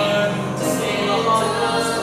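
Live stage singing of a musical-theatre song, with voices holding long sustained notes.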